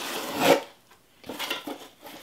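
Small cardboard mailer box being opened: the tucked lid scrapes and rubs free in about half a second, then lighter handling noises as the lid is lifted back.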